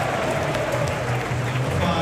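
Football stadium crowd din, with music and voices mixed into it.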